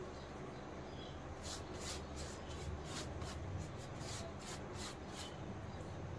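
Fresh taro (arbi) leaves rustling and crackling as they are handled and lifted from a pile: a quick run of about a dozen crisp rustles, starting about a second and a half in and lasting some four seconds.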